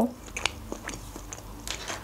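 Close-miked mouth sounds of a person chewing a mouthful of sushi: soft, scattered wet clicks.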